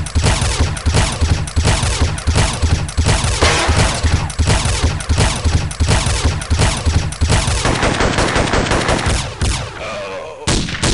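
Sustained automatic gunfire, a rapid run of shots several a second, thinning out and fading near the end.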